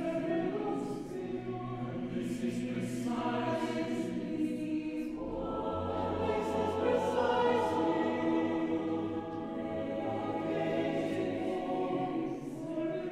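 Mixed-voice chamber choir singing sustained chords, the words' 's' sounds audible. About five seconds in, the harmony shifts and a low bass note enters beneath the upper voices.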